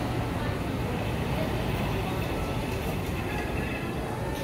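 Steady low rumbling background noise with faint voices mixed in.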